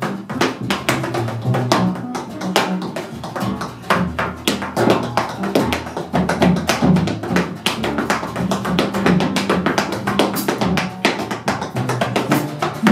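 Tap shoes striking a wooden stage in quick, dense rhythms, over a jazz trio's bass line and drums.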